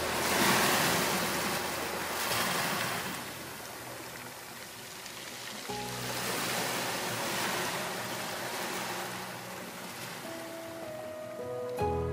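Sea waves breaking on a rocky shore, the surf surging and drawing back several times. Soft background music runs underneath and grows louder near the end.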